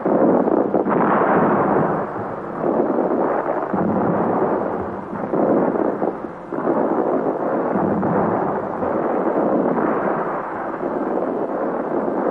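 Fireworks bursting in a continuous run of booms and crackle that swells and eases every second or two.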